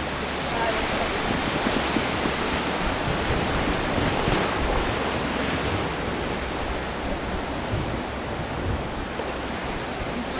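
Whitewater rapids rushing steadily around an inflatable raft, an even wash of churning river water.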